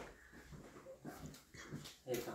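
Faint, short pained whimpers from a man as acupuncture needles are put into his back muscles.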